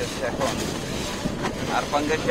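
Water rushing and splashing along the hull of a moving wooden boat, with wind buffeting the microphone; a steady noise.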